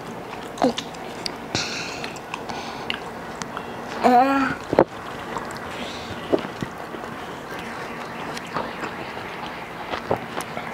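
People eating fried singaras (Bengali samosas) at a table: soft bites, chewing and small clicks of handling, with a short laugh about four seconds in.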